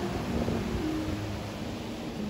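Surf breaking and washing up a sandy beach, with wind on the microphone and a few soft sustained notes of background music under it.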